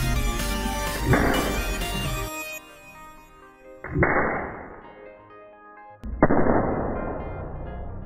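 Small lengths of solder exploding as a high-voltage capacitor bank is shorted through them: three sharp bangs, each followed by about a second of fading crackle and hiss, the first about a second in and the next two a few seconds apart. Background music plays throughout.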